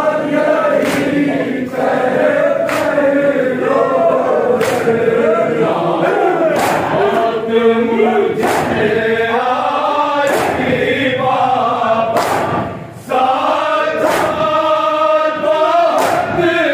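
A crowd of men chanting a noha together, with their palms striking their chests in unison (matam) about once a second as a sharp, regular beat under the singing.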